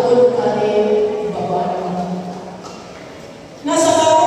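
A woman's voice amplified through a PA in a large hall, drawn out in long held tones. It dies away to a lull about two and a half seconds in and comes back loud just before the end.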